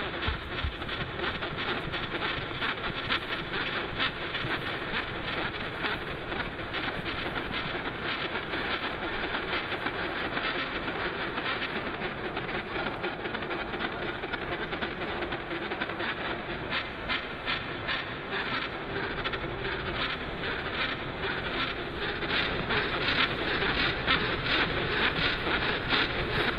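Electroacoustic dance score: a dense, hiss-like noise texture with a fast, even clatter of clicks running through it, like a train on rails. It grows louder near the end.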